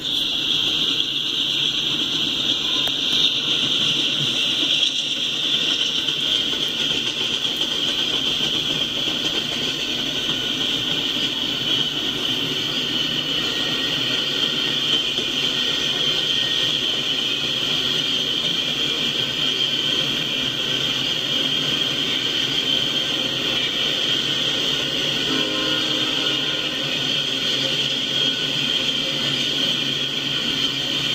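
Double-stack container train's cars rolling steadily past, a continuous rumble of wheels on rail with a steady high-pitched hiss over it, heard through a live webcam's audio played back from a screen.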